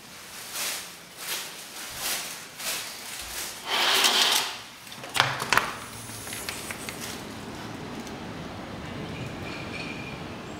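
A sliding balcony door being opened: a few short scrapes, then a longer, louder slide along its track about four seconds in, and two sharp knocks. After that a steady outdoor city hum comes in.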